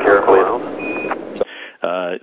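A single short high beep about a second in, a Quindar tone of the kind that keys a NASA air-to-ground radio transmission. It sits over a commentator's voice, and narrow, radio-filtered speech follows near the end.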